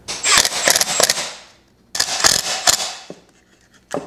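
Cordless impact driver driving screws, its rapid hammering rattle in two bursts of about a second and a half each with a brief pause between.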